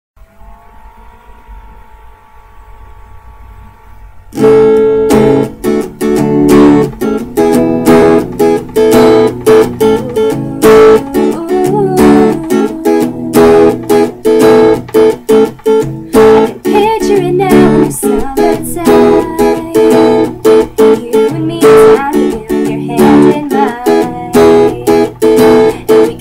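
Acoustic guitar strummed in a steady rhythm, starting suddenly about four seconds in after a faint, quiet opening.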